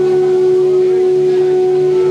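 Live rock band holding one steady sustained note, a drone-like tone without drum hits.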